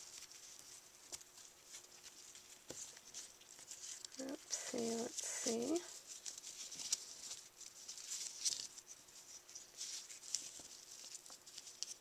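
Ribbon rustling and sliding through the fingers as a bow is tied by hand, with small soft scratches and clicks of the ribbon against the card. Three short hummed or murmured vocal sounds come about four to six seconds in.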